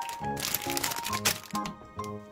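Background music with a melody of short notes, over a burst of dry crackling and crinkling lasting about a second, starting about half a second in, as a dry kalguksu ramen noodle block goes into the pan.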